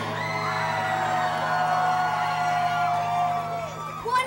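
A young singer holding one long yelled note into a microphone for about three and a half seconds, dipping in pitch as it ends, over a steady low amplifier hum.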